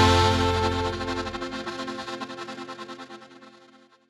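Final held chord of a norteño band song, fading away and wavering quickly as it dies out to silence near the end.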